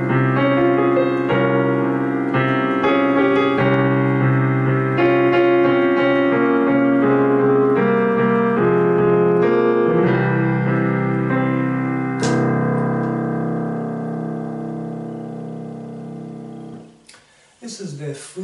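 Piano improvising on the notes of the C Phrygian scale, with its Spanish flavour: a flowing run of notes and chords, then a final chord about twelve seconds in that is held and fades away before the end.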